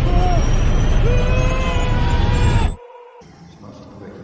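Film soundtrack of an aircraft crashing, heard from inside the cabin: a loud rumbling roar with a slowly rising high whine and shouts, cut off suddenly near the end. Quiet background music follows.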